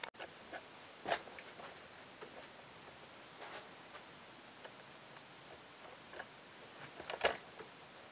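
Quiet handling noises over faint background hiss. Two short knocks or rustles stand out, about a second in and just after seven seconds, with a few softer clicks between.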